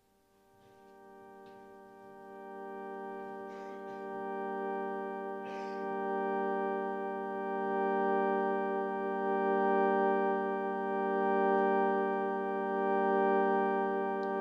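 Farfisa organ holding one long sustained tone, swelling in over the first few seconds and then held steady.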